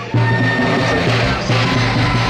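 Andean festival band music: several long wooden flutes playing a melody together in unison over a large bass drum. The music drops away for a moment right at the start, then carries on.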